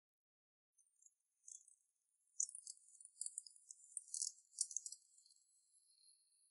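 Faint, high-pitched chirping and trilling of night insects such as crickets. It starts about a second in, is busiest in the middle, and settles into a steady trill near the end.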